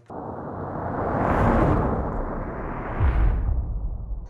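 Layered sound-design effects for a fly-through-dust edit: a rushing, whooshing swell that starts abruptly and builds over the first second and a half, then a riser peaking into a deep boom of an impact about three seconds in.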